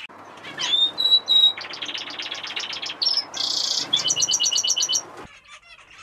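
Canaries singing: a rising whistle, then fast trills of chirps at about ten notes a second. The song cuts off suddenly near the end.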